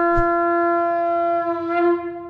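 A shofar sounding one long, steady, unbroken blast on a single note, with a short soft knock about a quarter second in.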